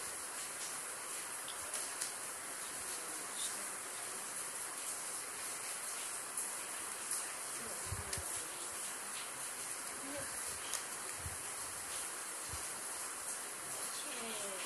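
Cardboard jigsaw pieces being slid, tapped and pressed together on a glass tabletop: scattered small clicks and a few soft low thumps. They sit over a steady high hiss.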